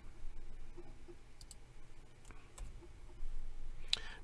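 A few faint, scattered clicks from computer input as text is entered in a software field.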